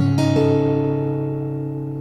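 Acoustic guitar with a capo on the fourth fret, a D minor 6th chord shape picked string by string from low to high. The top strings come in a few tenths of a second in, and then the chord rings on and slowly fades.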